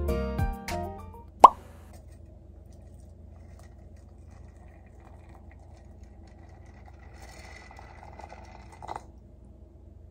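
Hot water poured from a gooseneck kettle into a glass teapot of tea: a faint steady pour that stops about nine seconds in. A single short, rising plop about one and a half seconds in is the loudest sound, after background music fades out at the start.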